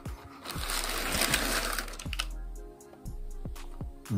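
Tissue paper crinkling and rustling for about two seconds as a sneaker is lifted out of its shoebox, over background music.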